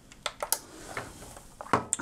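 A few short, sharp plastic clicks and knocks from a white plastic smart power strip being handled and turned over, with a brief rustle after them and a louder knock near the end.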